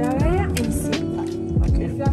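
Background pop music with a deep kick drum and a sung note sliding up in pitch near the start.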